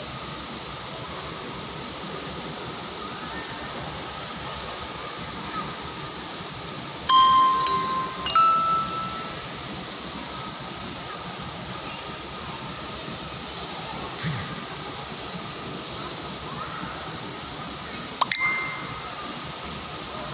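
A steady wash of splashing pool water, with a few bright ringing chime notes about seven and eight seconds in and again near the end, the last one starting with a sharp click.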